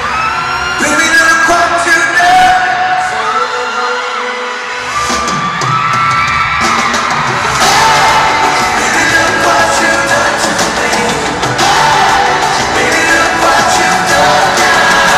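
Live pop band performance in a large arena, recorded from the audience: male lead vocals singing long held notes over a full band. The bass and drums drop out briefly near the middle and then come back in.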